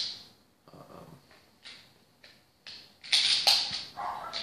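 Taurus PT111 9mm pistol being handled as it is cleared: a few light clicks, then near the end a louder metallic clatter of the slide being worked, with two sharp snaps about half a second apart.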